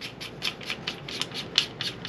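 Hands rubbing and gripping the metal of a Turkish-made Benelli-clone pump shotgun: an irregular string of small scrapes and light ticks, several a second.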